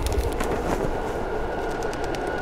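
Subway train running: a steady low rumble and rattle of the carriage with scattered clicks.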